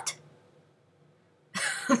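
A pause, then near the end a short, breathy laugh from a woman.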